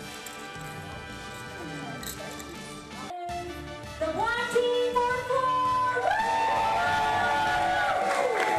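Background music for the first few seconds, then, after a brief cut, a woman singing into a microphone, louder, with gliding and long held notes.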